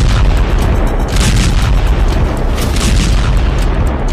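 Loud, deep explosion booms mixed with background music, with heavier blasts about a second in and near three seconds.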